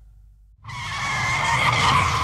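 Heavy metal recording: the last notes of a song fade out into a brief quiet gap, then about two-thirds of a second in a loud, screeching, squealing noise starts abruptly and swells as the next track opens.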